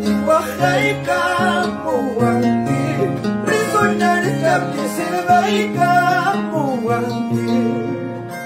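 Andean harp plucking a huayno, with bass notes on the low strings about twice a second, and a man singing the melody over it.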